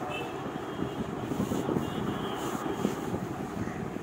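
Steady, fairly quiet background noise with a rough, grainy low texture, and faint thin high tones near the start and again around the middle.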